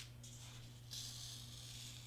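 A pencil scratching on black board as it draws a line: a faint, steady scraping hiss that grows stronger about halfway through.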